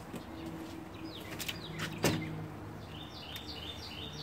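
Birds chirping outdoors, ending in a quick run of short falling chirps. A single sharp click about two seconds in, over a faint low steady hum.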